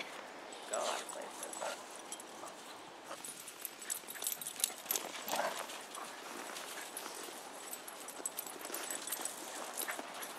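Two dogs playing in snow: scuffling, with quick irregular crunching of paws on the snow. A few short, faint vocal sounds come near the start and around the middle.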